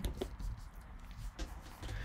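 Quiet room tone with a low hum and a few faint clicks, two of them close together near the start.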